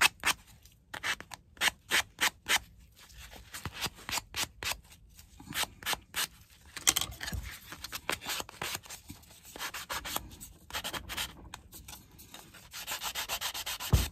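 Hand sanding block rubbed over the edges of a small craft ornament piece: short scraping strokes in uneven runs with pauses between, quickening near the end.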